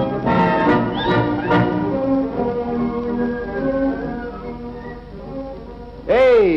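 Orchestral film-score music with brass, the title music of an old educational film, fading down over the last couple of seconds.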